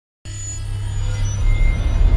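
Silence, then about a quarter second in a deep rumbling sound effect starts abruptly and swells steadily louder, with faint high tones above it: a cinematic riser of a logo intro.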